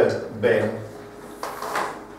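Chalk drawn across a blackboard in one long stroke, a scrape of about half a second near the end.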